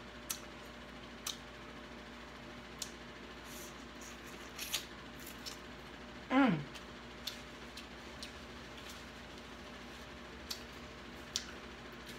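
Close-up eating sounds: scattered small clicks and smacks from chewing and from fingers working peeled shrimp and crab shell. About six and a half seconds in, a short falling-pitched 'mm' from the eater's voice.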